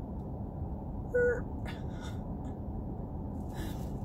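A woman gives one short hummed "mm" about a second in, over a steady low rumble inside a car's cabin, with a few faint small clicks after it.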